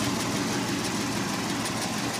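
Engine of a 1969 International Harvester 1300 truck idling steadily, heard close up under the open hood.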